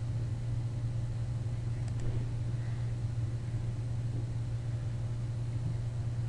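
A steady low hum with a faint click about two seconds in.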